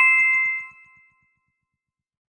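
A two-note chime sound effect: a higher ding and then a lower one, ringing out and fading away within about a second.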